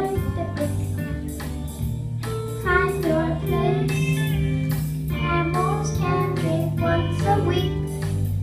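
A group of children singing a song over accompanying music with held bass notes and a steady beat.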